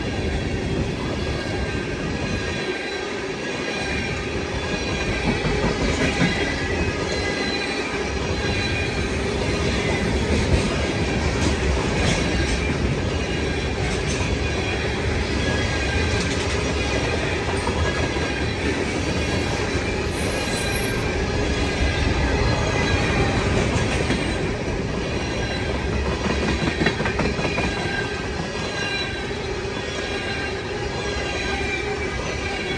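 Freight train of tank cars rolling steadily past a grade crossing: loud, continuous wheel-on-rail noise with a steady high-pitched squeal from the wheels.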